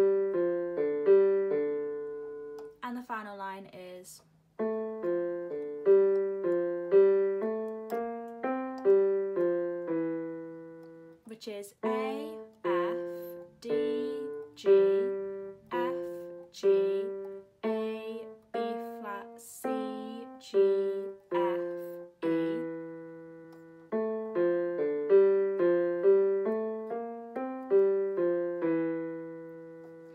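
Casio Casiotone CT-S300 keyboard on its stereo grand piano voice, playing a slow single-note right-hand melody. Each note strikes and decays, with brief pauses between phrases.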